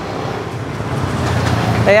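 Road traffic noise from a city street, an even engine and tyre rumble that grows gradually louder over the two seconds.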